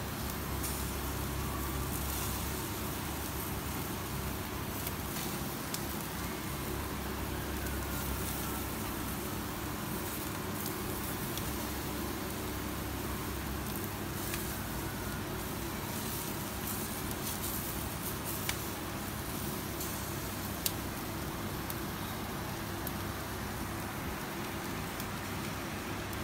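Commercial gas yakitori grill running steadily, its burners giving a constant rush and hiss, with skewered chicken sizzling over the heat. A few sharp clicks stand out.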